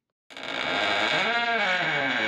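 An outro sound effect starts suddenly about a third of a second in. It is a dense, distorted, held sound whose pitch bends up and back down, and it ends in a sharp crack before fading away.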